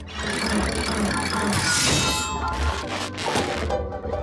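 Cartoon mechanism sound effects as a large wooden crank wheel is turned, over music. A loud rushing burst comes about one and a half seconds in.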